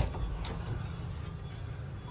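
Latch of a cabin bathroom door being opened: a sharp click right at the start and a fainter one about half a second later, over a steady low background hum.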